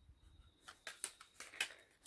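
A few faint clicks and light taps as the thin sheet-steel lid is prised off a slim CD/DVD rewritable drive.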